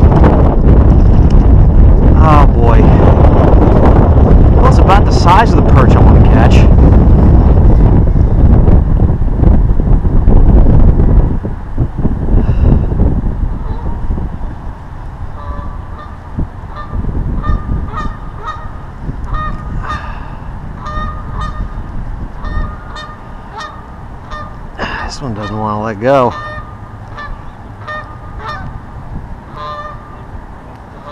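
Wind buffeting the microphone for roughly the first ten seconds, then many short honking waterfowl calls repeating through the rest, one louder call standing out a few seconds before the end.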